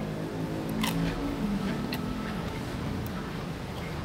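Crisp deep-fried wonton wrapper of a crab rangoon crunching a few times as it is bitten and chewed, over low background music.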